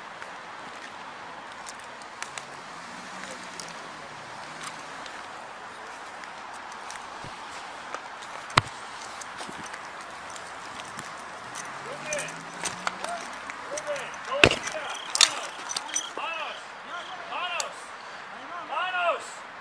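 Steady hiss from a body-worn camera's microphone, with a couple of sharp knocks, one about halfway through and another near the end. From about two-thirds of the way in, voices call out, rising and falling in pitch.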